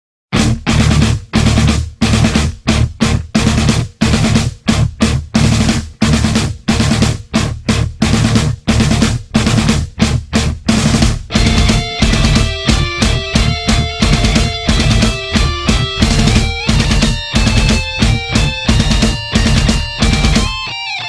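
Rock music: heavy drum and bass hits in a stop-start pattern, with sustained pitched notes joining in about halfway through.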